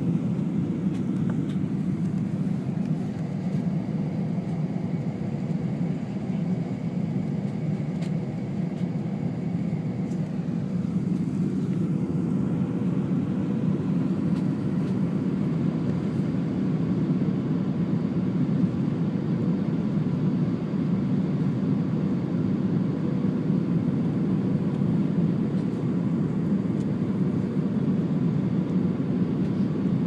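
Airliner cabin noise on approach to landing: a steady low rumble of jet engines and airflow heard from a window seat, with the flaps extended.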